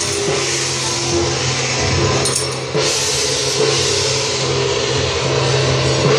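Taiwanese temple-procession percussion: drums, gongs and cymbals playing on without a break, with a sudden loud crash about three seconds in.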